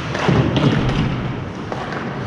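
Ice hockey play in an echoing rink: a thud followed by a few sharp knocks of puck, sticks or boards, over the arena's steady background noise.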